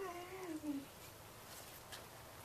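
A dog gives one short whine that falls in pitch and lasts under a second at the start, followed by faint background.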